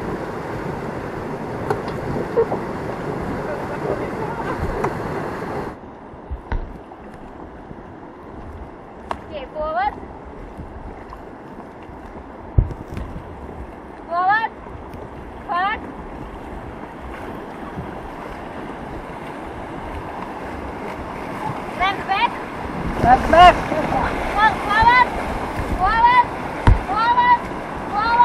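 River water rushing around an inflatable raft, quieter after about six seconds, with short high whooping shouts from rafters now and then and in quick succession over the last few seconds.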